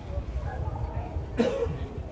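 A man coughs once into a close microphone, a short sudden cough about a second and a half in, over a low steady hum.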